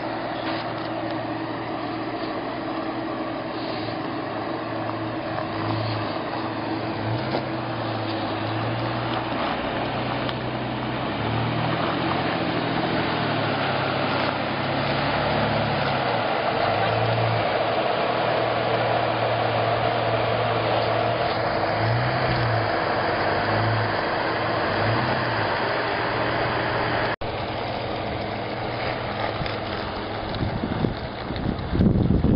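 Jeep Wrangler JK Unlimited engine running at low speed while rock crawling, its note rising and falling with several short pushes of throttle.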